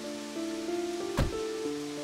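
Soundtrack music of long held notes over steady rain, with a single sharp thump about a second in: a car door being shut.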